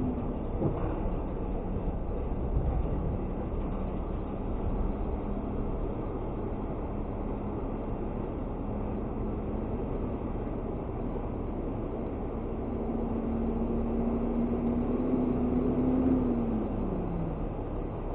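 Garbage truck's diesel engine running steadily under the dump. Late on, an engine note slowly rises and grows louder, then drops away.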